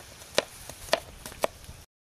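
Kitchen knife chopping an onion on a plastic cutting board: three sharp knocks about half a second apart, with fainter taps between. The sound cuts off abruptly near the end.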